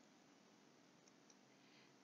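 Near silence: faint room hiss, with two faint clicks just past a second in.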